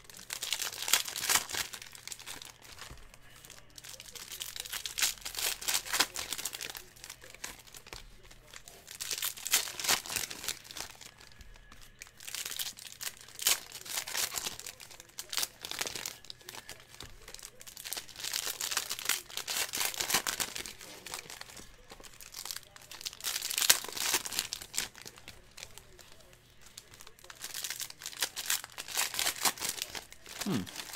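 Foil trading-card pack wrappers crinkling and tearing open by hand, in bursts every few seconds.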